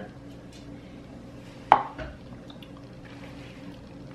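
Quiet room with a faint steady hum, broken by one short sharp click about halfway through and a softer one just after, while two people drink smoothie from plastic cups.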